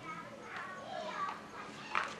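Children's voices: high-pitched chatter and calls of children playing, with a sharp click near the end.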